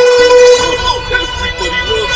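A cartoon TV commercial's soundtrack run through a metallic ringing effect, so that a constant buzz with evenly stacked overtones lies under everything. A loud held tone fills the first half second, then wavering voice-like sounds follow.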